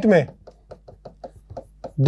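Pen writing on an interactive board: a quick, uneven run of about a dozen light taps and clicks as letters are written.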